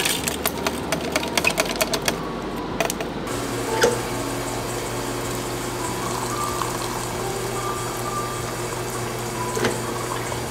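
Clicks and rustles as a tea bag is dropped into a plastic pitcher. About three seconds in, a water dispenser starts pouring a steady stream into the pitcher, with a low hum under the splash.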